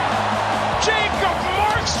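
A play-by-play commentator's voice over arena crowd noise and background music, the voice coming in a little under a second in.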